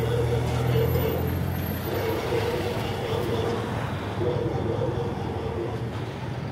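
Street traffic dominated by small motor-scooter engines running close by, a steady low hum with a higher engine note that swells and fades a few times.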